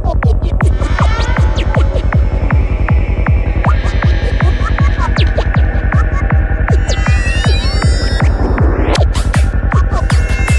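Dark psytrance track at 158 BPM: a steady kick drum about two and a half beats a second over a continuous heavy bassline. Gliding synth lines come in late, and a rising sweep builds just before the end.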